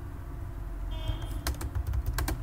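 Typing on a computer keyboard: a short run of quick key clicks in the second half.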